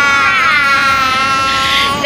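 A young girl's long, high-pitched squeal of delight, held on one slowly falling note and cut off suddenly at the end.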